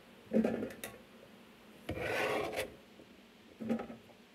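Knife cutting through small red potatoes on a plastic cutting board, in three scraping strokes: one about half a second in, a longer one around two seconds in, and a short one near the end.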